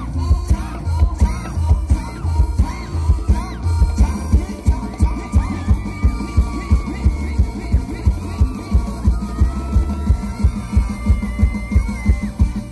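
Thai ramwong dance music played by a live band: a heavy, fast, steady bass-drum beat under a held, gliding melody line.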